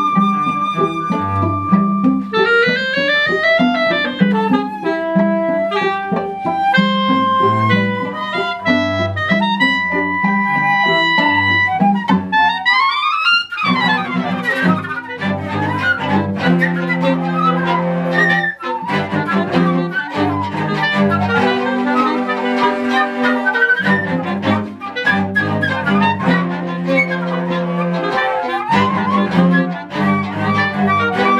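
Live contemporary chamber music for woodwinds and bowed strings: held wind notes and sliding string pitches, then a steep upward sweep about 13 seconds in leading into a dense, busy passage with the whole ensemble playing, a brief gap partway through and another upward slide near the end.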